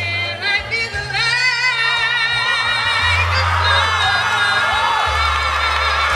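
A woman singing solo into a microphone over instrumental accompaniment with a low bass line, holding long notes with a wavering pitch; a new held note starts about a second in.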